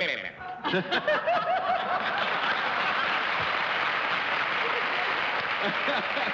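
Studio audience laughing, which after about a second and a half settles into steady applause mixed with laughter.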